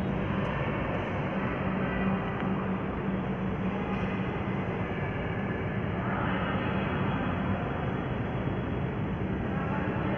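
Steady rushing background noise with a faint low hum and no distinct events.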